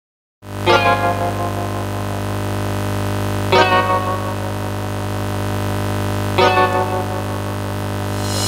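Karaoke backing track intro, melody removed: a steady low synthesizer chord is held while a bright chord is struck three times, about three seconds apart, each ringing out.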